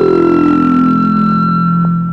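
Synthesized electronic tones over the credits: a high note held steady above a low tone that slides down in pitch through the first second or so and then settles.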